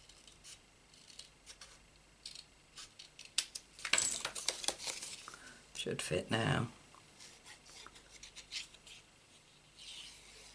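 Paper craft handling: light taps, clicks and rustles of card stock being picked up and set down on a craft mat, with a denser rustling scrape about four seconds in. A brief voice sound, like a short hum, follows around six seconds.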